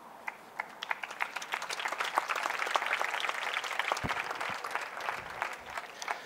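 Audience applauding. It starts with scattered claps, builds over the first couple of seconds, then tapers off near the end.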